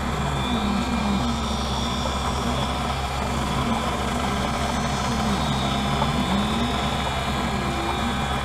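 Optical lens edger grinding a bevel into the edge of a prescription lens. The steady motor-and-wheel hum has a low pitch that sags and recovers now and then as the turning lens works against the bevel wheel.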